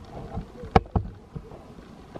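Footsteps on a dirt forest trail, about two a second. A sharp snap or click a little under a second in is the loudest sound.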